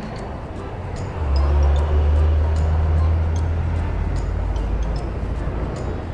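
Riding noise of a Yamaha Nmax 155 scooter's single-cylinder engine pulling away, with wind rumble on the camera microphone; the low rumble gets louder about a second in and holds steady.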